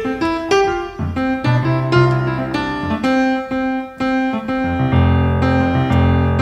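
Grand piano playing a jazz passage alone, a run of chords and single notes over sustained low bass notes that come in about a second and a half in and again near the end.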